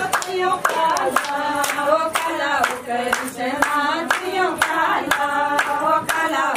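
A group of women singing a Pahari Krishna bhajan together, kept in time by steady hand clapping at about two claps a second.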